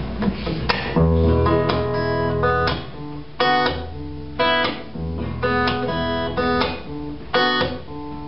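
A guitar, most likely acoustic, plays the instrumental intro of a live song. Chords are strummed in a steady rhythm that starts about a second in, with short muted strokes between the ringing chords.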